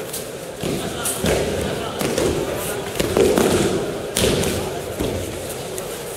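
Several dull thuds of bodies and feet landing on mats from aikido throws and breakfalls, irregularly spaced, the loudest around the middle, over background chatter in a large echoing hall.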